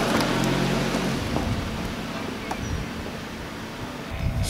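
A car driving away: a low engine hum and tyre noise in the first second, then a rumble that fades steadily as it recedes.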